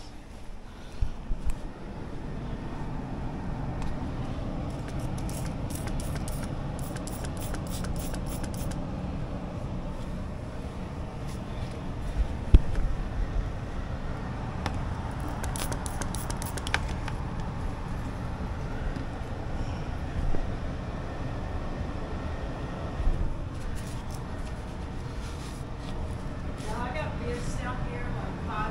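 Steady low rumble of an indoor air handler running, with two bursts of sharp clicks and a single knock partway through.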